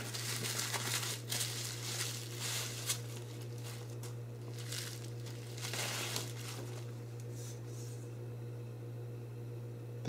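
Pink anti-static bubble-wrap bag crinkling and rustling as a circuit board is slid out of it. The rustling comes in bursts over the first few seconds and again around the middle, then dies down, over a steady low electrical hum.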